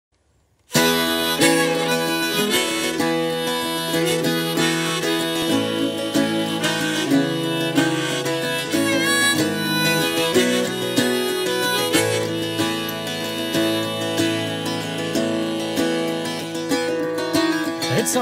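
A harmonica in a neck rack plays a folk melody over a strummed bouzouki. It starts after a moment of silence, less than a second in.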